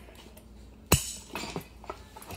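Metal seat-post and base-plate parts of a scooter add-on seat clinking together as they are handled and fitted: one sharp clink about a second in, then a few lighter knocks.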